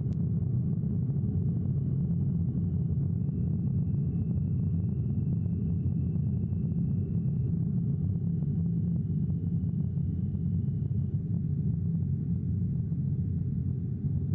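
Steady deep rumble of a Vega rocket's P80 solid-fuel first stage burning as it climbs away, heard from a distance.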